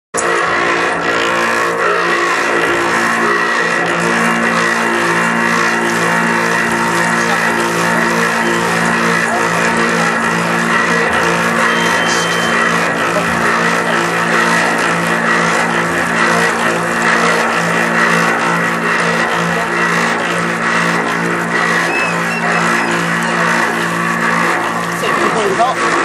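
Brass bachîn pan made to bray, its stalks rubbed with wet hands: a continuous droning hum with a stack of steady overtones, wavering a little in strength.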